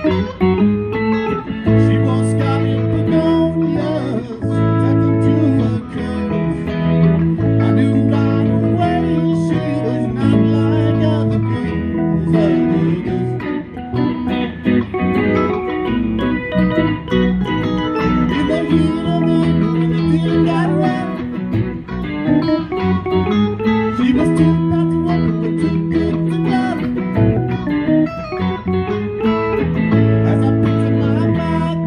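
Live rock band playing: electric guitars, bass guitar and keyboard together, over a repeating bass line.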